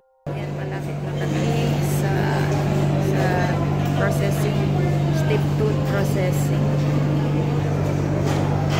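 Murmur of many voices in a crowded hall over a steady low hum, starting just after a brief silence at the very start.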